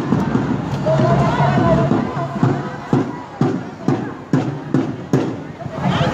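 Crowd of marchers' voices, with a drum beaten at a steady pulse of about two strokes a second starting near the middle.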